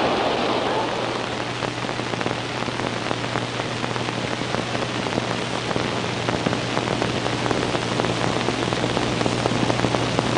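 Steady hiss with fine crackle and a low, constant hum: the surface noise of an old film soundtrack, running unbroken.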